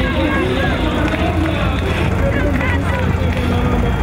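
Crowd voices and chatter over the steady running of a tractor engine towing a parade float past.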